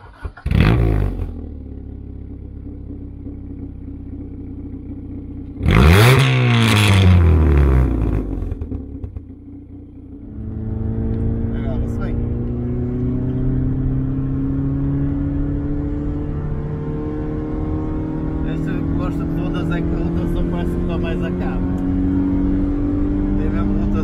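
1989 Honda Civic's 1.4-litre dual-carburettor four-cylinder engine heard at the exhaust: it starts and idles, is revved up and back down about six seconds in, and settles to idle. After that it is heard from inside the cabin on the move, the engine note climbing steadily under acceleration, dropping at a gear change about two-thirds through and climbing again.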